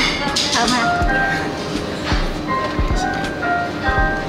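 Background music with a low beat and held notes.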